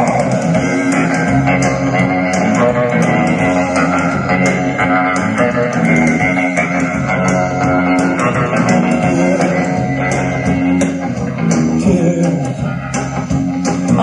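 Live rock band playing an instrumental passage with no singing: electric guitar to the fore over bass guitar and a steady drum beat.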